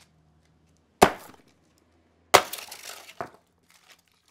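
Sledgehammer blows smashing the broken remains of a Samsung PS-WJ450 subwoofer on concrete: one hit about a second in, a second hit about a second and a half later that sets off a clatter of scattered fragments.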